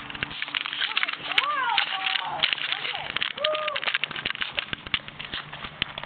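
Handling noise from a handheld camera being swung about: a rapid string of clicks and rustles, with faint voices in the background.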